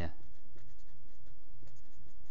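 Felt-tip marker writing on a printed poster board, a quick run of short scratching strokes.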